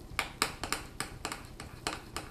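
Utensil stirring thick cake batter in a glass mixing bowl, clicking sharply against the glass about four times a second in an uneven rhythm.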